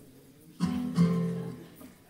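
Two guitar chords strummed about half a second apart, ringing out briefly. It is a quick check of the guitar's sound between songs, with the delay effect on it.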